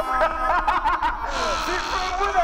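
Several people laughing, in quick high rising-and-falling bursts, over background music with steady held notes.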